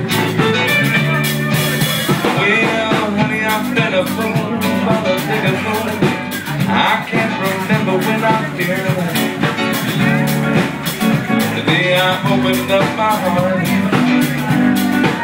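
Live band playing a blues-rock passage between sung lines: guitar over a drum kit keeping a steady beat.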